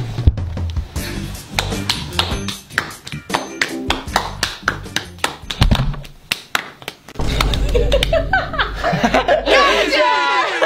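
Hand-clapping game: two people's palms clapping and slapping together in a quick rhythmic pattern over a music track with a steady bass line.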